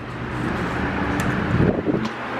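Steady outdoor city background noise with wind rumbling on the microphone, growing louder in the first half second as the camera moves out onto an open balcony.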